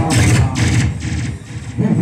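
Live jatra stage music during a fight scene: percussion with three short crashes in the first second over a heavy low beat, easing off briefly before the music picks up again near the end.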